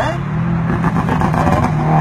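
A car engine on the road, its low hum rising slightly in pitch about half a second in and then holding steady.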